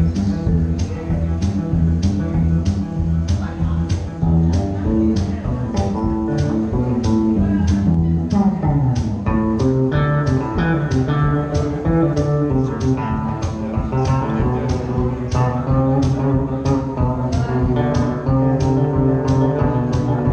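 Live electric guitar music, a one-man performance: picked guitar riffs over a steady percussion beat of about two hits a second, with a descending run of notes about eight seconds in.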